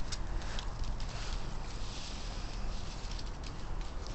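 Steady outdoor background noise with faint rustling and light taps of the camera being moved and handled; no clear impact.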